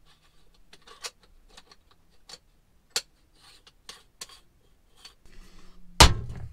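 Scattered light clicks, taps and brief rubbing of kitchen items and a stovetop moka pot being handled at a small sink and stove, ending in a louder knock as the moka pot is set down on the metal grate of the gas burner.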